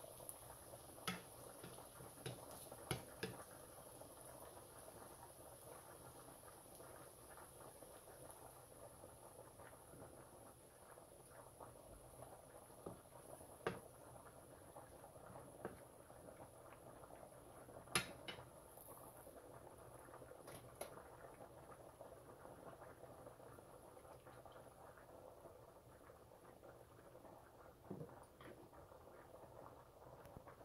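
Faint simmer of heavy cream and vegetables in a skillet on low heat, with scattered sharp taps of a wooden spoon against the pan, the loudest about eighteen seconds in.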